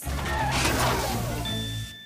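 Cartoon sound effect of a large construction vehicle's engine rumbling with a noisy clatter, stopping abruptly near the end, over background music.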